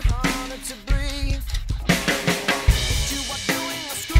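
Acoustic drum kit played along to a pop-rock backing track: kick drum, snare and cymbals over the song's guitars. Cymbal wash fills the top end from about halfway through.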